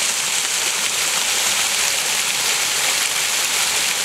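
Fountain water pouring in streams off a bronze sculpted head and splashing down, a steady, even rush of falling water.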